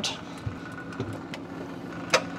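A Phillips screwdriver turning screws out of a plastic freezer back panel, giving three light clicks, over the steady hum of the running refrigerator.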